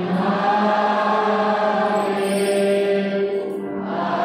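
Voices singing a slow hymn in long, held notes, with a short break between phrases near the end.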